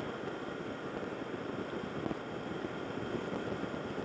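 Motorcycle cruising at road speed: a steady rush of wind and road noise on the rider's microphone.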